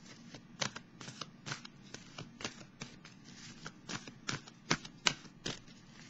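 A deck of tarot cards being shuffled by hand: an uneven run of soft, sharp card clicks, several a second.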